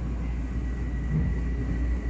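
Inside a passenger train carriage: the steady low rumble of the running train, with a faint thin high whine starting shortly after the beginning.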